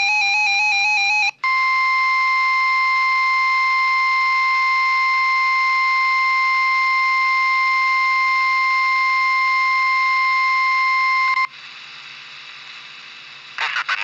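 NOAA Weather Radio warning alarm tone from a portable weather radio's speaker: one steady, loud, single-pitched tone of about 1050 Hz lasting about ten seconds, sent as the weekly test of the alarm that switches on weather-alert receivers. A short warbling tone comes just before it, and a couple of seconds of quieter radio hiss after it.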